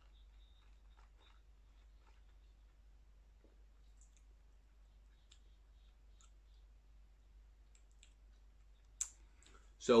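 A near-silent small room with faint, scattered mouth clicks while rum is held and tasted. A sharper lip smack comes about nine seconds in, just before speech begins.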